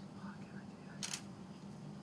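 A steady low hum, with a single short, sharp click about a second in.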